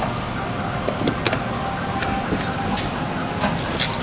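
Claw machine's claw moving and dropping, its motor running under a steady arcade din, with a few sharp clicks.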